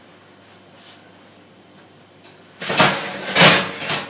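Oven door opened and a baking tray drawn out over the oven rack: a loud scraping sound about two and a half seconds in that peaks twice and lasts just over a second.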